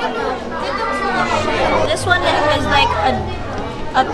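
Background chatter: several people talking at once, their voices overlapping so that no words stand out.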